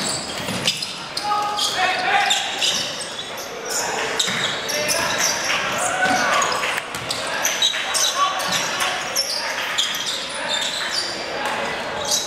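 A basketball bouncing on a hardwood gym floor during play, with players calling out and the echo of a large sports hall.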